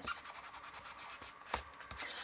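Small hand-held ink applicator scrubbed back and forth along the edge of a paper page, a soft rubbing and scratching, with one sharper tap about one and a half seconds in.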